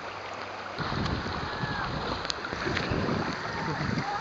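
Shallow river water rippling and splashing close to the microphone, getting louder about a second in, with low buffeting on the microphone.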